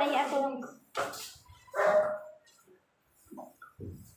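People's voices in a small room, with a few short barks from a dog.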